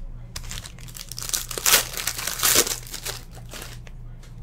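Foil trading-card pack wrapper crinkling and crumpling as the pack is opened by hand: a run of crackly bursts over about two seconds, loudest near the middle.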